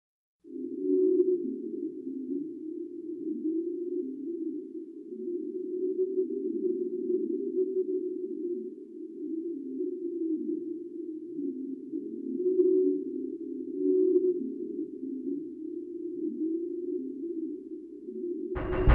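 Electronic score music: a low synthesizer drone with wavering tones and short downward slides, starting about half a second in.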